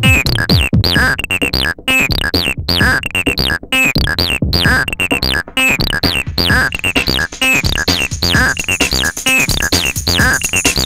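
Electronic dance music from a live DJ set: a fast repeating synthesizer riff of short notes that slide down in pitch, over a drum-machine beat.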